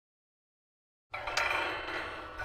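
Silence, then about a second in a bright chiming sound effect starts suddenly, struck again shortly after and left ringing: the audio sting of an animated logo intro.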